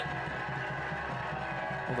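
Steady stadium background with music playing, at an even level.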